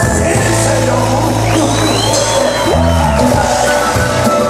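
Live morenada music from a Bolivian folk band with stringed instruments, bass and drums, playing at full volume. A high, arching glide sounds over the band midway through.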